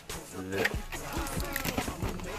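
Music with vocals, with speech mixed in.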